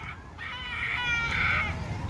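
A child's high-pitched cry of about a second and a half, in two wavering parts, over a low steady background rumble.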